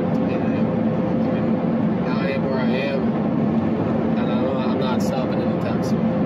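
Car cabin noise while driving: a steady engine drone with an even low hum, under road and tyre noise.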